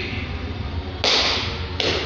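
Medicine ball thrown and landing on rubber gym flooring: a sudden thud about a second in, then a second impact near the end as it bounces.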